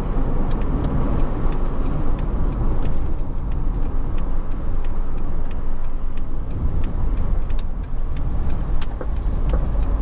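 Car driving along a city road, heard from inside the cabin: a steady low rumble of tyre and engine noise, with faint scattered ticks.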